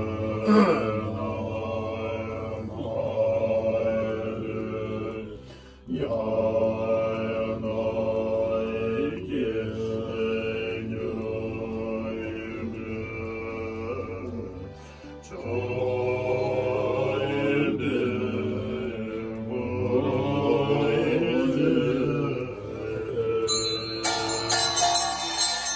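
Tibetan Buddhist prayer chanting: voices recite in long phrases on steady, low held pitches. There are short breaks about six and fifteen seconds in.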